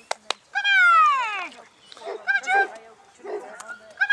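A dog whining in high, pitched cries: one long cry that falls in pitch about half a second in, then shorter cries after it.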